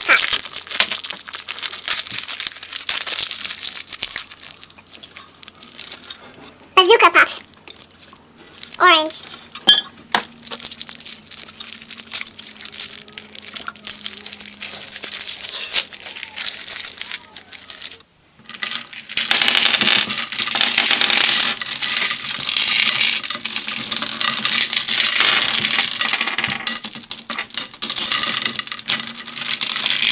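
Cellophane wrapper of a lollipop crinkling as it is twisted and pulled off, with two short vocal sounds. From about 18 seconds in, hard candies clatter and rattle as hands stir through them in a plastic bowl.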